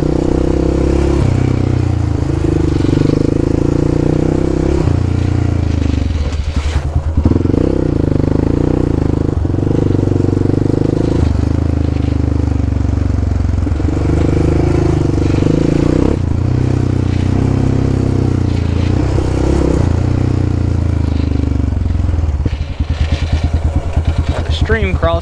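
Yamaha Raptor 700 ATV's single-cylinder four-stroke engine running under way on a dirt trail. Its note steps up and down every few seconds, with a brief drop-off about six seconds in and another near the end.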